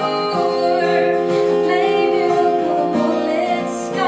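A woman singing a pop ballad, accompanied by acoustic guitar and piano; her voice slides between held notes over steady sustained chords.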